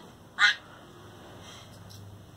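A child's voice giving one short, loud "Ah" about half a second in, over low room background.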